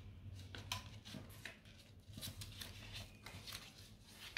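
Faint crisp rustling and crackling of a card-stock greeting card being handled, folded and opened, heard as a string of short scrapes and clicks.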